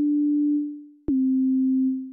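UVI Falcon 3 software synthesizer playing a pure sine-tone preset. One held note fades out, then a slightly lower note starts about a second in with a click and fades near the end.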